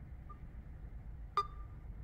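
Kids' smartwatch giving a faint short beep, then about a second and a half in a sharp click with a brief single-pitched beep as its touchscreen is tapped, over a low steady room hum.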